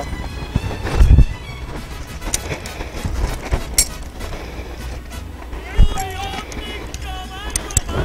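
Leather bridle and reins being fitted on a horse: scattered clicks and knocks of tack, with a heavier thump about a second in and another near six seconds, over a steady low rumble.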